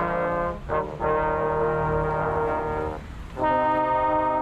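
Brass instruments playing a slow tune in long held chords, several notes sounding together, with short breaks about a second in and about three seconds in before a new chord.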